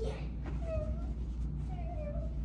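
A child's high voice sounding briefly twice, soft and without clear words, over a steady low hum of room ventilation.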